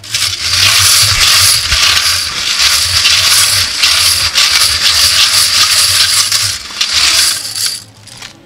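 Metal draw tokens rattling and clinking inside a lidded stainless-steel vessel as it is shaken to mix them for a lucky draw. The rattle is loud and continuous and stops just before the end.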